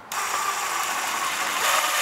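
DeWalt cordless drill running steadily with a gear whine, turning a Gator Grip universal socket to drive a cup hook into wood; it gets a little louder near the end.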